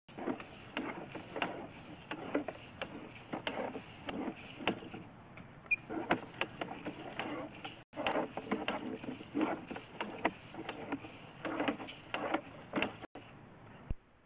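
Sewer inspection camera's push cable being fed down the line by hand: irregular clicks and knocks from the cable and its reel, over a faint high hiss that pulses a few times a second.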